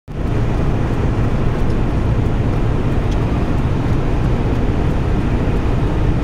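Steady in-cabin drone of a SsangYong Rexton SUV cruising at about 160 km/h: a deep, constant rumble of engine and tyres with rushing wind noise over it.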